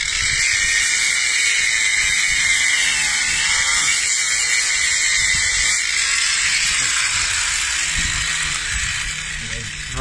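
A small electric angle grinder runs steadily with a high whine while its disc cuts through a bone wedged in a dog's mouth. The pitch wavers as the disc bites, and the sound eases off over the last couple of seconds.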